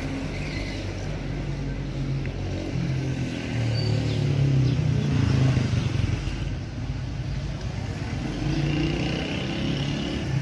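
A motor vehicle's engine running close by, getting louder from about four seconds in and easing off after about six seconds.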